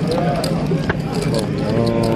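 Card-room ambience: a steady low hum under background voices, with one drawn-out vocal sound in the second half and a couple of sharp clicks.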